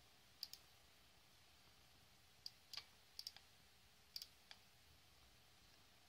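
Faint computer mouse clicks, about ten in all, several coming in quick pairs like double-clicks.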